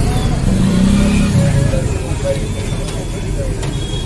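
Steady low rumble of street traffic, swelling briefly about a second in, with background voices.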